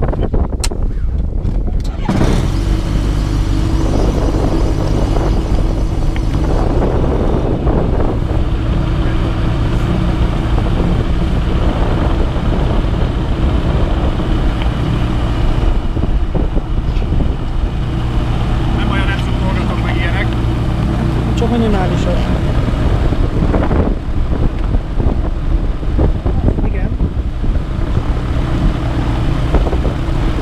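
An autogyro's piston engine and propeller start up about two seconds in and then run steadily at idle, a low, even drone.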